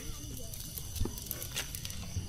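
Quiet handling noises as a caught fish is put away into the net and bag, with one sharp knock about a second in, over a steady high chirring of night insects.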